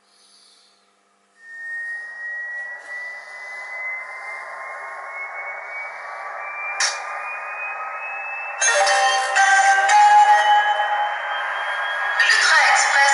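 Sound of a model RTG gas-turbine trainset's turbine starting up: a whine begins about a second and a half in and climbs slowly in pitch, with a sharp click near the middle. About two-thirds of the way in, a louder, denser layer of sound joins it.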